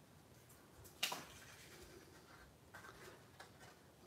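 Near silence, with faint rustling and a few soft ticks of paper and twine being handled by hand.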